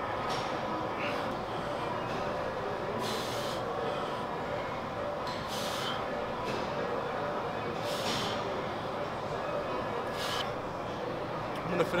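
Steady background din of a busy gym, with four short breathy hisses a couple of seconds apart, in time with a lifter's dumbbell press reps.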